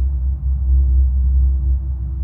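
Steady, low humming drone of binaural-beat tones, with a fainter higher tone that comes and goes.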